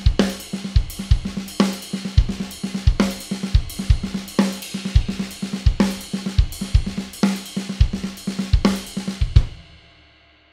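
Acoustic drum kit playing a fast linear triplet groove with a half-time shuffle feel: single strokes pass between cymbals, snare, toms and bass drum, one part of the kit at a time. Near the end the phrase stops on a final hit that rings out and fades.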